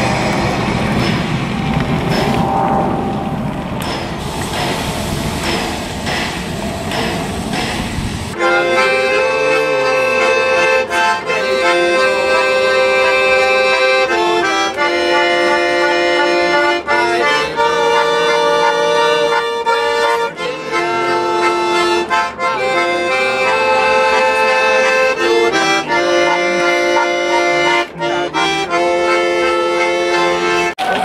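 Steam locomotive working past with regular exhaust beats. About 8 seconds in this gives way to a Swiss button accordion (Schwyzerörgeli) playing a lively folk tune in held chords that change about once a second.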